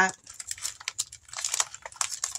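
Clear plastic pocket pages of a stamp storage binder crinkling as they are flipped and handled: a run of light, irregular crackles.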